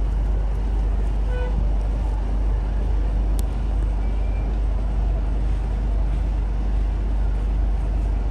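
Steady low hum and rumble of a running machine, even in level throughout, with a single sharp click about three and a half seconds in.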